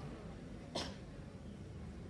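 Faint hall room tone in a pause in speech, with one short breathy hiss about a second in.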